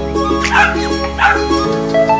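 A small dog gives two short, high yips about three-quarters of a second apart, over background music.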